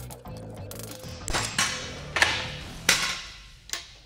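Several sharp metal clanks and taps from tools working apart an old, seized steering column, over quiet background music.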